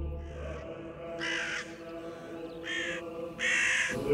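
Three harsh bird calls, the first about a second in and the other two close together near the end, over a sustained music drone.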